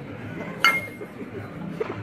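A single sharp clink of glass or ceramic tableware with a brief ring about half a second in, then a lighter tap near the end, over the background chatter of diners.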